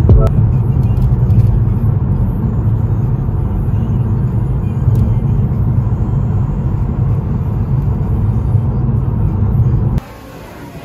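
Steady low rumble of road and engine noise heard inside a car cabin while driving on a highway.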